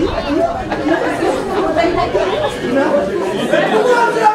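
Several people talking at once in overlapping chatter, with no one voice standing out.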